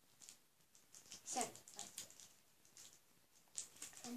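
Faint taps and rustles of cards being handled in an open card box, with a short, louder sound falling in pitch about a second and a half in.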